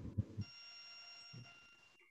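A steady electronic tone made of several high pitches, held for about a second and a half and then cutting off. The tone is faint, and a voice trails off just before it starts.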